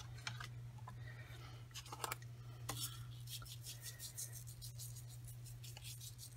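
Silver embossing powder being shaken from a small jar onto a card in a metal tray: faint, rapid ticking and light rustling.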